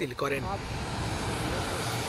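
A man's voice breaks off about half a second in, giving way to the steady, even rush of a jet aircraft's engines running on the ground.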